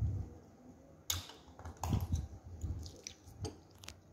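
Cardboard UHT milk carton being handled and its plastic cap twisted open, giving a few short, sharp crackles and clicks spread over a few seconds.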